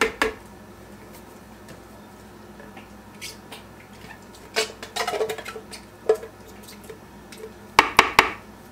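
Metal tin can and spatula knocking and scraping against the rim of a plastic food-processor bowl as the last crushed tomatoes are emptied out: scattered short clicks and knocks, a cluster about halfway through and a sharper pair near the end.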